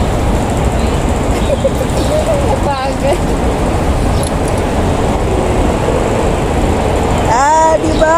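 Steady outdoor city background noise: a low rumble of road traffic with faint voices. A woman's voice comes in clearly near the end.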